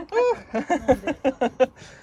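A person exclaims a surprised "oh" and then breaks into short bursts of laughter.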